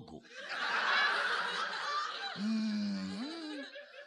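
Audience laughing at a punchline. The laughter starts just after the line ends, is loudest about a second in and fades off near the end.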